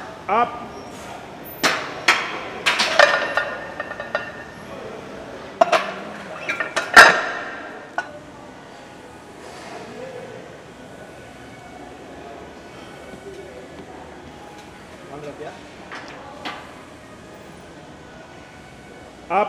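Barbell and iron plates clanging against the squat rack and each other, in two clusters of sharp strikes with ringing metal tones in the first half, the loudest near seven seconds in. A short rising vocal shout comes right at the start.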